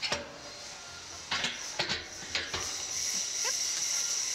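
Amusement-ride seat restraints being worked by hand: a few sharp metallic clicks and knocks of latches and harness parts, then a steady high hiss that swells from about three seconds in.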